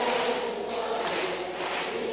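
A large congregation singing together at a low level, many voices blending into one steady sound.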